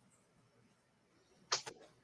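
Near silence of noise-gated call audio, broken by one short, sharp sound about one and a half seconds in.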